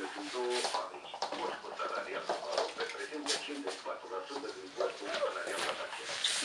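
People's voices talking in a small room.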